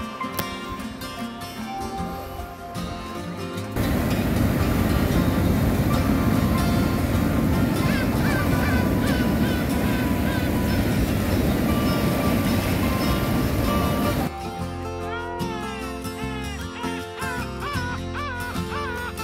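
Waves breaking over shore rocks, a loud steady surf noise that comes in suddenly about four seconds in and stops suddenly about ten seconds later. Background music plays before and after it, with warbling, gliding tones near the end.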